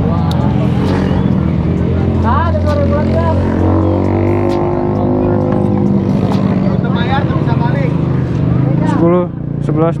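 Motorcycle engines idling steadily, with people talking over them and someone starting to count out loud near the end.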